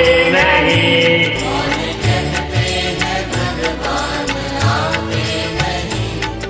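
Instrumental interlude of a devotional bhajan on a karaoke backing track, with a steady beat of bass pulses and light percussion. A sung line trails off about a second and a half in.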